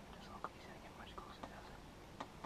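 Faint whispering with a few sharp little clicks, the loudest about half a second in.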